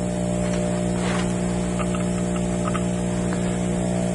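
Steady electrical mains hum, low and buzzy with many overtones, unchanging throughout, with a few light clicks of handling.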